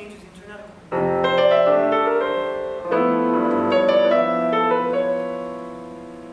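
Piano played: a chord struck about a second in, a second chord about three seconds in with a few melody notes moving over it, the notes ringing on and fading near the end.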